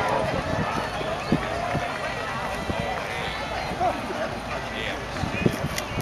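Several people chatting at once, overlapping voices with no single clear speaker, and occasional low thumps.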